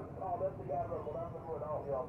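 People talking, their voices continuous, over a steady low rumble, with a few faint high chirps.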